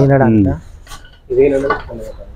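A low voice trailing off, then a few light metallic clinks, then another short voiced sound.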